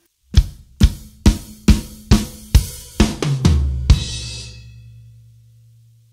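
Acoustic drum kit playing a fill: evenly spaced strikes, about two a second, starting on the snare and moving down onto the lower toms a little after three seconds. It ends with a loud crash cymbal and bass drum hit just before four seconds, which rings and fades away.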